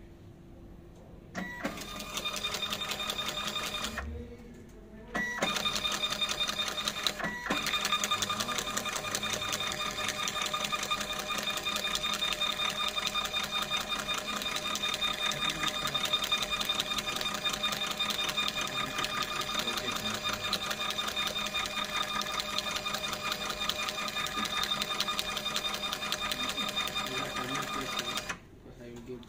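Zebra ZT410 industrial thermal label printer printing a run of barcode labels: a steady motor whine with fast fine ticking as the labels feed out. It starts about a second in, stops for about a second near 4 s, breaks briefly near 7 s, then runs steadily for about twenty seconds.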